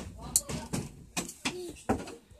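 Several knocks and clicks from a hand handling a small aluminium-bladed USB desk fan in its metal grille cage.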